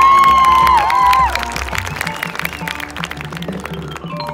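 High school marching band playing: a loud high held note that bends in pitch for about the first second, then quieter playing with many short percussion hits.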